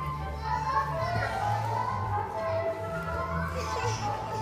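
Children's voices chattering and calling out over recorded Chinese folk music that accompanies the dance.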